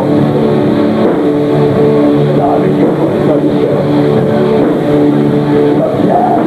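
Extreme metal band playing live: heavily distorted electric guitars hold sustained chords that change every second or so over drums, recorded loud from the audience.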